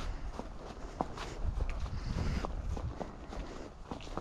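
Paso Fino horse's hooves stepping along a leaf-covered dirt lane: a string of soft, irregular thuds with some leaf rustle.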